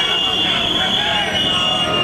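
High-pitched protest whistles blown steadily over the chatter of a crowd of picketing workers.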